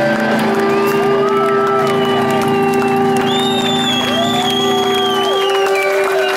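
A live Celtic folk-punk band holding its final chord, which breaks off about five seconds in, while the crowd cheers with rising-and-falling whoops.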